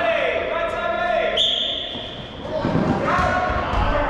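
A referee's whistle gives one short blast about a second and a half in, signalling the start of a dodgeball point, among players' shouts echoing in a large sports hall. Thuds of feet and balls on the court follow in the second half as play begins.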